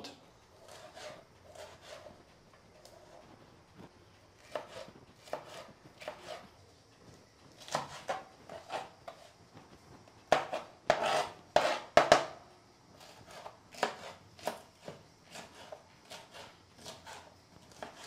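Kitchen knife slicing green bell pepper into strips on a plastic cutting board: irregular knocks of the blade through the pepper onto the board, with the loudest quick run of strokes a little past halfway.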